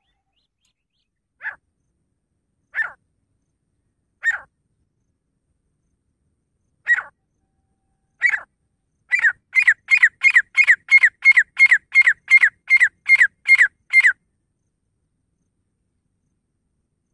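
Grey francolin calling. A few single sharp calls come a second or more apart, then a fast run of about fifteen calls at roughly three a second, which stops suddenly.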